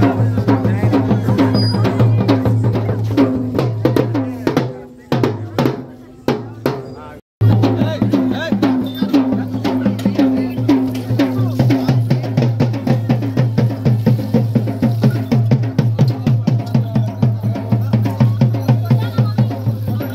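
Drums beating a rapid, steady rhythm with music. The sound fades about five seconds in, cuts off abruptly for a moment, and starts again at the same pace.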